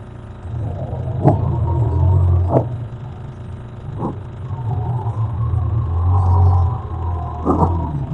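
Audio playback of a radio signal, which the uploader presents as a strange signal picked up by radio telescopes: a loud, steady low rumble with a faint wavering higher tone over it, broken by four sharp pops, about a second in, a second later, near the middle and near the end.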